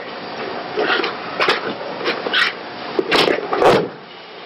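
Jujutsu uniforms rustling and feet shifting on a mat as a throw is made, with a few short scuffs. Near the end comes the loudest sound, a heavy thud of the thrown partner landing on the mat.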